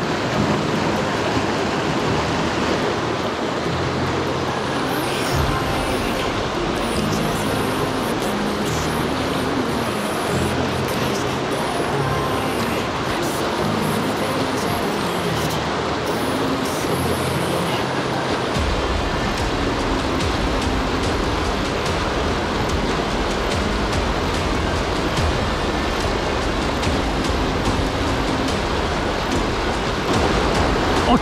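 Steady rush of a fast mountain stream's rapids with background music laid over it. A stepping bass line comes in a few seconds in, and a heavier low beat joins after about eighteen seconds.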